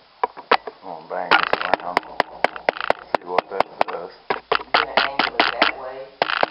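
A rapid run of sharp clicks or taps, about five a second, starting about a second in and stopping near the end, with muffled voices underneath.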